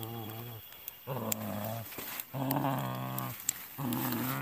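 A man growling and groaning in four long, low, drawn-out cries with short breaks between them, animal-like rather than spoken, from a person being restrained by others.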